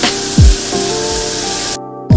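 Water spraying from a rain shower head, a steady hiss that cuts off suddenly just before the end, over background music with deep, dropping kick-drum beats.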